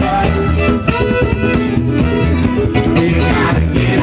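Live acoustic string band playing: upright bass, a small strummed acoustic instrument and fiddle.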